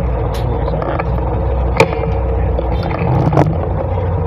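Steady low rumble of wind and handling on a handheld phone microphone out on the street, broken by three sharp knocks of the phone being handled, the middle one the loudest.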